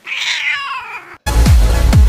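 A cat's meow: one falling call about a second long. The background music drops out around it and comes back in just after.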